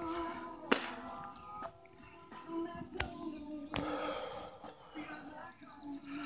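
A faint steady hum made of several held tones, broken by a few sharp clicks.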